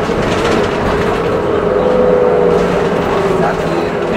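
Engine and road noise of a moving city bus, heard from inside the passenger cabin as a steady rumble, with a faint held whine through the middle.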